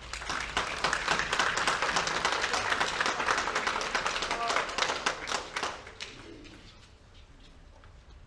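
A crowd clapping, with some voices calling out, after a baptism testimony: it swells about half a second in, stays loud for several seconds and dies away about six seconds in.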